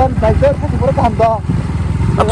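Motorcycle engine running at low speed, with a voice talking over it.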